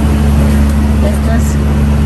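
Steady low hum of a big-box store's indoor background, with faint voices in it.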